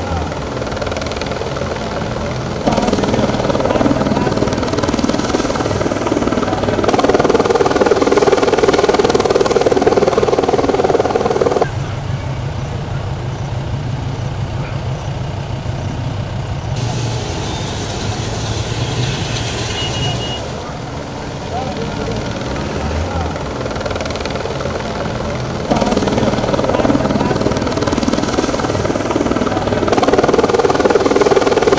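Helicopter rotor and engine noise, with a steady low beat in one stretch, and people's voices at times. The sound changes abruptly every few seconds.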